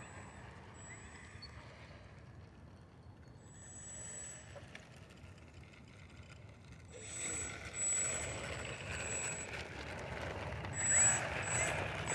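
The electric motor of a Carbon Cub S+ RC plane whines faintly at low throttle as the plane taxis over asphalt. It grows louder about seven seconds in, with a thin high whine that cuts in and out.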